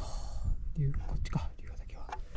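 A man's breathy, half-whispered voice: an airy breath at the start, then a short voiced sound a little under a second in, with a few sharp clicks just after.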